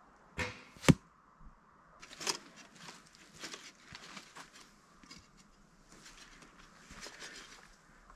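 Two sharp knocks about half a second apart in the first second, the second the louder, then soft footsteps and rustling on the forest floor as an archer walks up to a foam 3D deer target.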